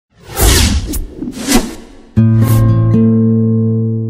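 TV channel logo sting: two rushing whooshes, then, just over two seconds in, a sudden held low chord that slowly fades away.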